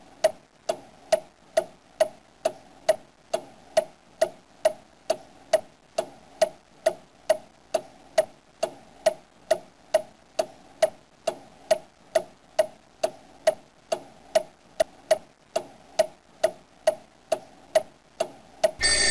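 Ticking-clock sound effect: sharp, evenly spaced ticks, a little over two a second, each with a short pitched ring.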